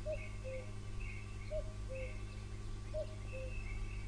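Birds calling: a low two-note falling call repeats about every second and a half, with higher chirps between, over a steady low hum.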